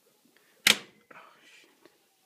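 A single sharp knock about two-thirds of a second in, followed by a short, faint rustle.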